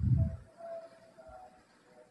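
A man's voice giving a short low hum, fading in the first half-second into a faint thin tone that dies away after about a second and a half.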